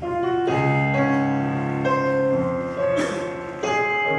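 Piano introduction to a slow song begins suddenly with sustained, held chords that change every second or so, with a brief bright shimmer about three seconds in.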